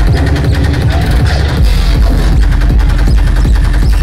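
Dubstep DJ set playing loud over a club sound system, heard from within the crowd, with a fast driving beat and heavy bass. The deepest sub-bass drops out for about the first second and a half, then comes back in.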